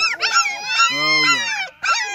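A litter of young German shepherd puppies whining, several high-pitched cries overlapping and rising and falling in pitch.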